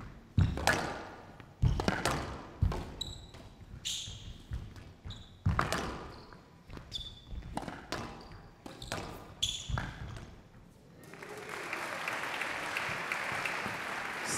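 Squash rally: sharp cracks of racket on ball and ball on the walls, about one a second, with short squeaks of court shoes on the wooden floor. The rally ends about eleven seconds in and the crowd applauds.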